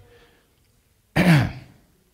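A man clearing his throat once, a little over a second in: a short, loud burst whose voiced pitch falls as it fades.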